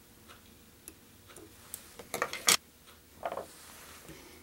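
Small fly-tying tools handled at the bench: scattered light clicks and taps, a quick cluster of sharper clicks about two seconds in, then a duller knock.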